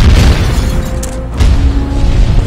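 Loud explosion booms over background music: one hit at the start and a second about one and a half seconds in.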